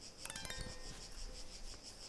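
A brief, faint chime of several high ringing tones together, starting about a quarter second in and fading within half a second, over a faint, steady, high insect-like chirring.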